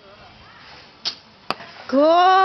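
An archer shoots a bow: the string is released with a short sharp snap about a second in, then about half a second later comes a sharp knock as the arrow hits the target.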